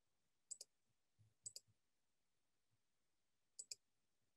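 Computer mouse clicking through presentation slides: three sharp double clicks, the first two a second apart and the last about two seconds later, over near silence.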